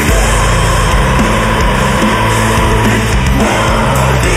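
Progressive deathcore (djent) metal: a loud instrumental passage of heavily distorted, low-tuned guitars and bass playing a riff of changing low notes, with no clear vocals.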